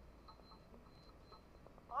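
Near quiet: a low background hum with a few faint, short, high chirps and a faint thin high tone in the first half.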